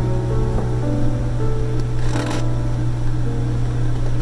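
Background music with slow, held notes over a steady low drone, and a brief scratchy noise about two seconds in.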